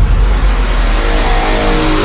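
Loud engine-rev-like sound effect in the music track: a dense rush of noise over a deep rumble, with a pitched tone building underneath from about halfway in.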